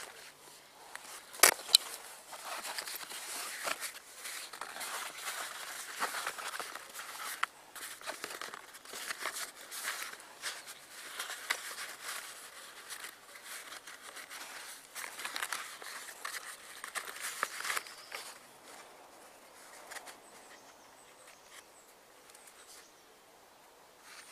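Heavy canvas vent flap on a swag tent being lifted, rolled back and fastened by hand: irregular rustling and scraping of stiff canvas, with one sharp click about a second and a half in. The handling quietens over the last few seconds.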